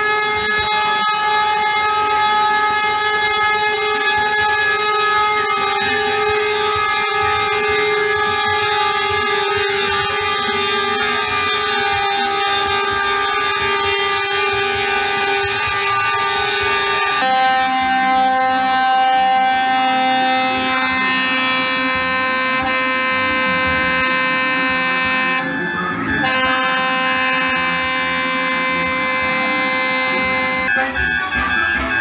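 Truck air horns sounding continuously as trucks pass, several held tones together. One chord holds for about 17 seconds, then gives way to a different, lower chord that breaks off briefly near the 26-second mark.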